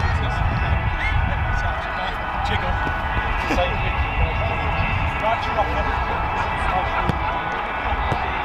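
Wind rumbling on the microphone over distant, indistinct voices.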